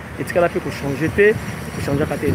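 A man's voice talking in short phrases over steady outdoor background noise.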